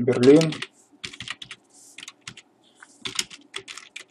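Typing on a computer keyboard: quick, irregular keystrokes in short runs, after a brief spoken word at the start.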